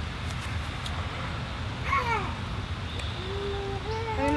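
Brief wordless vocal sounds from a voice: a short falling exclamation about halfway through and a held steady 'ooh' near the end, over a steady low background rumble.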